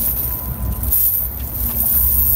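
Metal chain sinkers of a cast net clinking lightly as the net is gathered and lifted by hand, a few small clinks over a steady low rumble.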